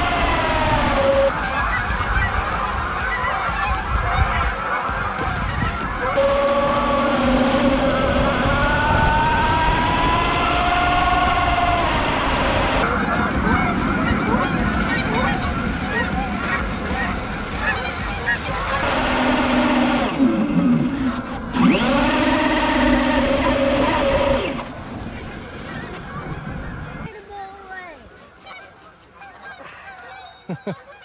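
A large flock of Canada geese honking in a dense, continuous din as they take flight, fading away over the last few seconds.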